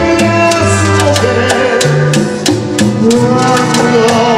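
Live tropical big band (sonora) playing an instrumental passage: horns hold long notes over a steady percussion beat.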